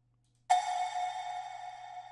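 A single sampled cowbell hit, soaked in reverb, about half a second in: one bright metallic strike that rings on and fades slowly.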